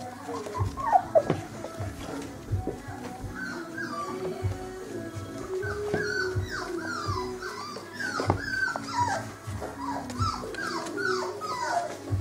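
Four-week-old puppies whining and yelping in many short, falling squeals as they play, thickest in the second half, with a few knocks early on.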